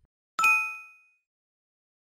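A notification-bell 'ding' sound effect, struck once about half a second in. Several bright tones ring together and fade out within a second.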